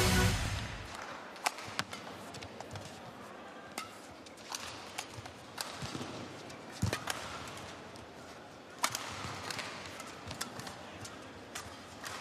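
Badminton rally: rackets strike the shuttlecock back and forth in sharp, separate cracks about once or twice a second, over the quiet hum of an arena hall. The tail of an intro music sting fades out in the first second.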